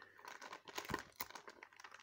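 Foil Pokémon booster pack wrapper crinkling as it is handled: a quiet, continuous run of small crackles.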